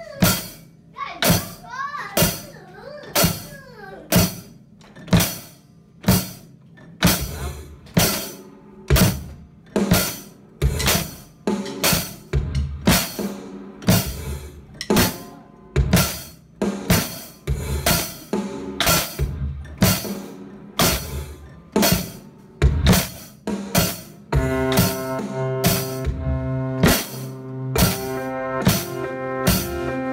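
A child playing a drum kit: sharp drum hits in a steady beat, about one a second at first, with more strokes filling in between as it goes on. About 24 seconds in, backing music comes in and the drumming carries on over it.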